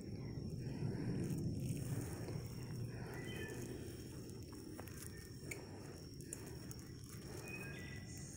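Woodland ambience while walking: a low rustling of steps and brush that eases off after the first couple of seconds, under a steady thin high insect drone, with a few short bird chirps.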